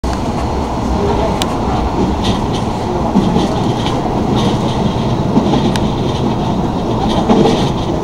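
Running noise of an electric commuter train heard from inside the car: a steady rumble of wheels on rails, with a couple of sharp clicks.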